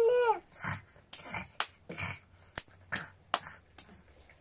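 A brief whine at the very start, then a run of sharp, irregular scrapes and clinks of a utensil inside a metal teapot, roughly two or three a second.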